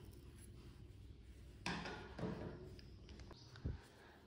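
Faint handling sounds as fiberfill stuffing is pushed into a small crocheted ball with the tip of a pair of scissors: two brief scrapes about two seconds in, and a dull thump near the end.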